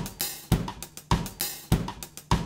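Music: a steady drum-kit beat of bass drum, snare and hi-hat, with a strong low hit roughly every half second, opening the backing track of a nursery-rhyme song.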